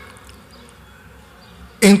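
A pause in a man's speech filled by a faint steady hum, with his voice starting again near the end.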